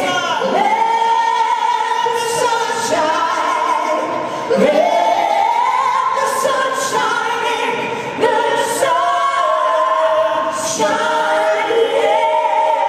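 A mixed group of male and female singers singing long held notes in harmony through microphones, sliding up in pitch into new chords about half a second and again about four and a half seconds in.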